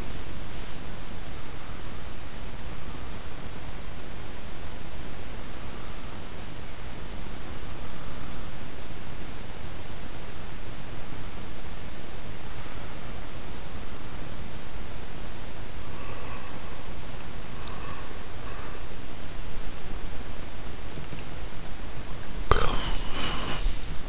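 Steady hiss and low rumble of an open voice-over microphone, with no distinct events. A brief voice sound comes in near the end.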